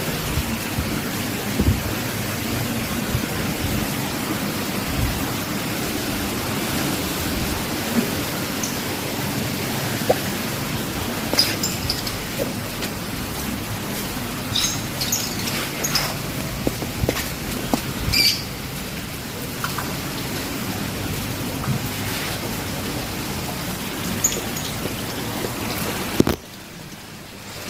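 Steady splashing of a small waterfall spilling from a spout into a fish pond, with a few light clicks and knocks in the middle.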